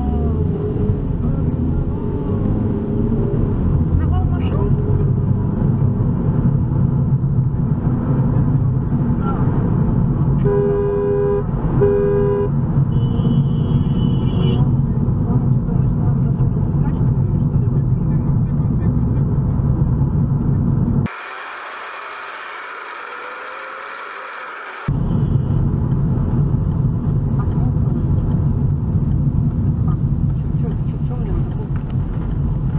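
Steady low rumble of a car's engine and tyres heard from inside the cabin, with two short car-horn honks about a second apart a third of the way in. For about four seconds past the two-thirds mark the low rumble drops out, leaving only a thin hiss.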